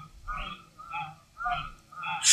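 A man's voice through a stage microphone making faint, short sung syllables, about two a second, between louder chanted phrases.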